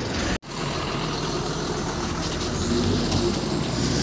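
Ashok Leyland tipper truck's diesel engine running with road noise as the truck drives, a steady rumble. The sound drops out for an instant about half a second in.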